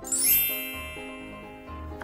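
A magic-wand chime sound effect: a bright shimmering sparkle that sweeps down from very high at the start and rings on, fading over about a second and a half. It plays over light background music with piano-like notes.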